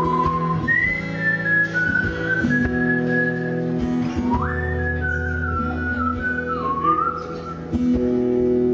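Small-bodied acoustic guitar strummed in steady chords under a whistled melody. The whistle runs in two phrases, the second opening with a quick upward slide about four seconds in and ending shortly before the guitar comes up again near the end.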